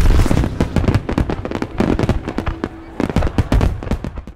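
Fireworks going off in a dense, irregular run of bangs and crackles, loudest in the first half second and then coming in looser clusters.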